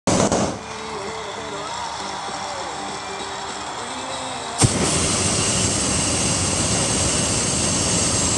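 Hot air balloon propane burner firing. About four and a half seconds in there is a sharp click, and a loud, steady rushing blast follows and keeps going to the end.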